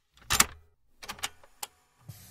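A few sharp clicks and knocks against dead silence: the loudest about a third of a second in, then a quick cluster of smaller ones just past the middle and one more near the end.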